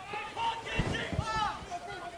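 Voices calling and shouting on a rugby field during a ruck, fainter than the commentary, with one call rising and falling about one and a half seconds in. A few low dull thumps come about a second in.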